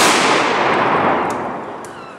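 An honour-guard volley of soldiers' rifles fired together: one loud crack, followed by a long rolling echo that dies away over about a second and a half.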